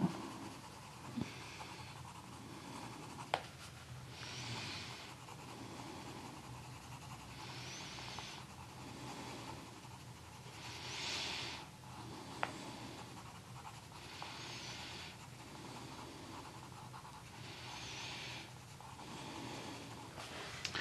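Tombow Irojiten coloured pencil shading on a colouring-book page: soft scratchy strokes in bursts of about a second, every three seconds or so, with a few faint clicks.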